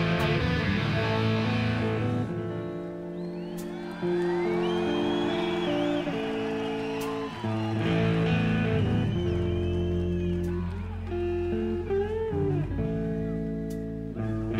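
Live rock band playing an instrumental passage: electric guitar holding notes, several of them bending up and down in pitch, over a bass line.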